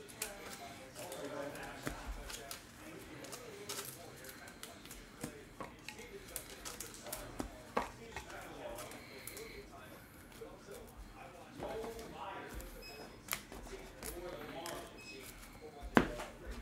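Trading cards being flipped and slid against one another by hand: irregular light clicks and snaps, over a low murmur of voices.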